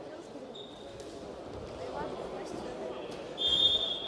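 A referee's whistle in a wrestling hall: a brief peep about half a second in, then a longer, louder blast near the end. Under it, a murmur of voices in the hall and soft thuds of the wrestlers on the mat.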